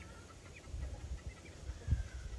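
Faint short clucks and peeps from poultry, over a low rumble, with a dull thump near the end.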